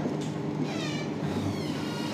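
Whiteboard marker squeaking against the board in a few short, gliding strokes in the first second as handwriting is finished, over a steady low room hum.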